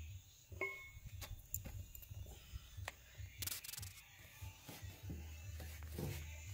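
Faint handling noise close to a plastic container: scattered clicks and a rubbing rustle about three and a half seconds in, over a low rumble, with a brief squeak about half a second in.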